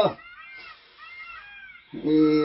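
A man's sung hakpare samlo note drops away in a downward glide right at the start, leaving a short pause in which faint, high, arching calls come twice.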